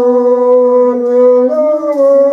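A single voice singing a slow melody in long held notes, the pitch stepping up about one and a half seconds in.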